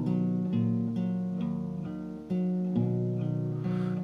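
Solo acoustic guitar playing alone, picked chords over a stepping bass line, fading a little before a new chord is struck about two seconds in.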